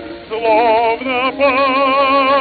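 Operatic tenor singing with a wide vibrato on an early acoustic gramophone recording from 1904, over accompaniment. The voice comes in about a third of a second in, after a brief held accompaniment chord, and moves to a new sustained note about halfway through.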